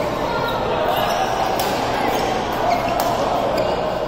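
Badminton rally: a couple of sharp racket strikes on the shuttlecock and shoe squeaks on the court floor, over steady background chatter in a large sports hall.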